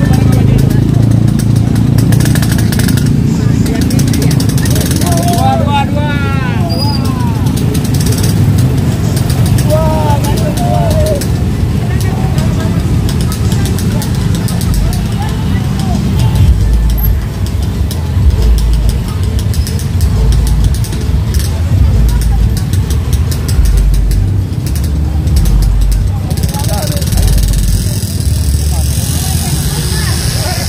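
Motorcycles and scooters riding in at low speed in a convoy, engines running with a deep rumble that swells and pulses as they pass. Voices call out briefly over them a few times.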